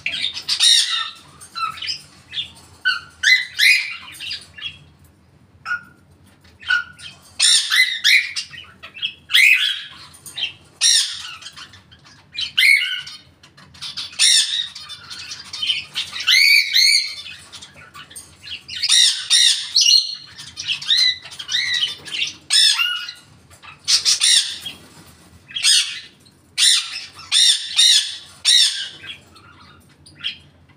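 African grey parrot squawking and calling over and over: loud, sharp calls in quick clusters with short pauses between them.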